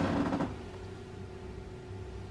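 Small electric suction machine running with a steady hum and a faint constant tone while its hose is worked at the ear, after a brief louder noise in the first half second.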